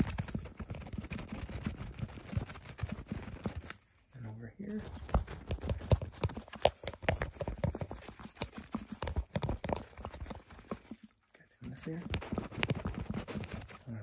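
Clear plastic tubes handled in gloved hands right at the microphone: rapid, irregular tapping, clicking and crackling. It breaks off briefly about four seconds in and again near eleven seconds.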